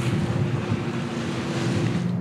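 Water rushing and slapping along a boat's hull with wind on the microphone, over the steady hum of a boat engine running.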